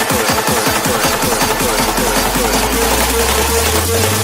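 Hardstyle dance music in a build-up: a fast roll of kick drums that speeds up, with a low bass note swelling in from about halfway through.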